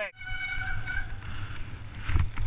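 Mountain bike disc brake squealing: a steady high tone held for under a second, followed by a low rumble of tyres rolling over dirt that grows louder near the end.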